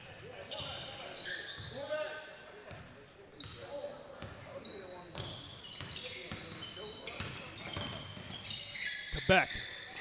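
Live basketball on a hardwood gym floor: sneakers squeak in many short, high chirps as players cut and stop, with the ball bouncing a few times and voices calling out on the court.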